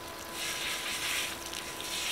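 Water spraying from a battery-powered portable camp shower, a hissing spray that starts a moment in, over the steady hum of its small pump. It runs at a strong setting, strong enough that it is turned down to a light spray right afterwards.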